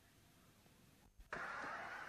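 Near silence, then a steady, even hiss cuts in abruptly a little past halfway through.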